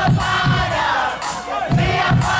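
Live band of drums, bass, guitar and keyboard playing an upbeat song with a steady beat of about two kicks a second and sung vocals, with a crowd singing and shouting along.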